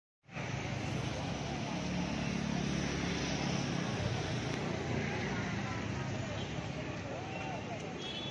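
Busy street ambience: steady traffic noise from passing motorcycles and vehicles, mixed with the chatter of a waiting crowd.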